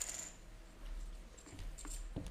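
A light click with a short high ring at the start, then faint scattered knocks over a low hum in a quiet hall.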